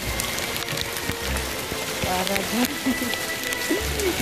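Hail falling and striking the ground and surrounding surfaces: a steady hiss full of small sharp ticks.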